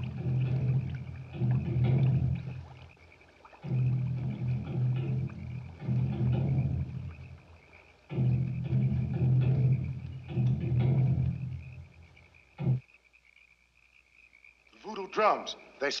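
Deep film-soundtrack music in six repeated low phrases of about two seconds each. It breaks off about twelve and a half seconds in, just after a single sharp knock, and a voice cries out near the end.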